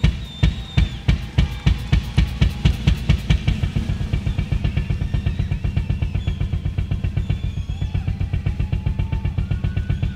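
Rock drum kit played solo on stage, bass drum and snare strokes about two or three a second at first, quickening into a fast, even pattern of strokes after about four seconds.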